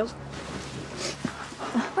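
Soft whimpering of a person crying quietly, a few brief faint sounds over quiet room tone.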